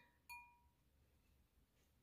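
Near silence, with one faint clink about a quarter of a second in that rings briefly: the painted glass cloche knocking lightly as it is lowered over the scene.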